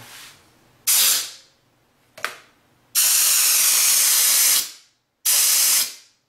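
Compressed air from a compressor blow gun hissing through a homemade pen-tube venturi sprayer as it sprays water from its cup, in three bursts: a short one about a second in, a long one of nearly two seconds, and a shorter one near the end. A single sharp click comes between the first two bursts.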